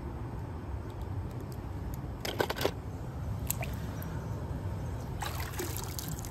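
Water splashing and dripping into a swimming pool from a wet toy car lifted out of it, with a few brief splashes over a steady low background.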